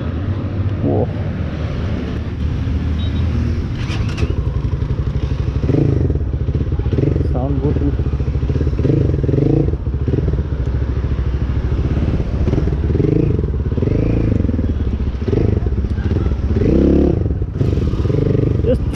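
Hanway Scrambler 250 motorcycle's single-cylinder, air-cooled four-stroke engine running steadily while the bike is ridden.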